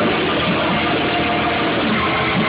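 Live rock band playing, a dense, loud wall of distorted electric guitar and drums, recorded with a muffled, lo-fi sound.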